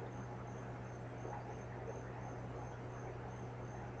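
Background noise of a cheap microphone: a steady low hum and hiss, with a faint high-pitched chirp repeating about three times a second, like a cricket.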